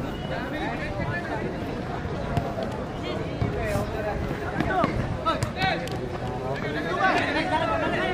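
Overlapping voices of several people calling out and chattering, none of them one clear speaker.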